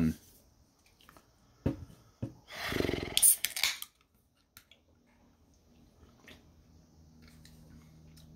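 Aluminium drink can of Liquid Death iced tea being cracked open: two short clicks from the pull tab about two seconds in, then a hiss lasting about a second and a half. Faint handling sounds follow.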